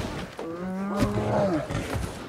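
A bear roaring: one drawn-out call of about a second, starting about half a second in and dropping in pitch as it ends, with a sharp knock in the middle.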